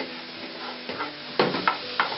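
Chicken and vegetables sizzling in a frying pan as they are stirred, with a few sharper knocks of the utensil against the pan, the loudest about a second and a half in.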